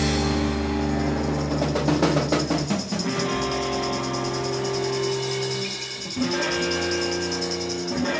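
Live rock band playing an instrumental passage: electric guitars and bass hold sustained chords over a fast, even cymbal shimmer from the drum kit, moving to a new chord about six seconds in.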